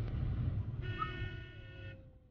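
Low road and engine rumble inside a moving van, with a vehicle horn sounding once for about a second, starting a little before the middle.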